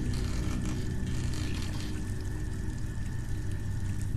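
Water splashing in a white ceramic bowl as hands work in it, over a low, steady droning music underscore.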